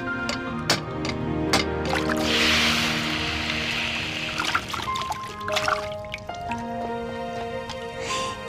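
A smith's hammer strikes a hot blade on an iron anvil three times, then the red-hot steel is plunged into water and quenched with a loud hiss lasting about two seconds. Background music with sustained tones plays throughout.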